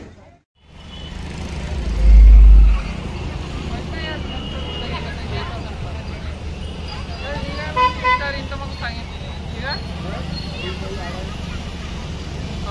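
A dhumal DJ sound rig sound-checking: one very deep bass burst about two seconds in, lasting under a second, over a steady low rumble, with street voices around.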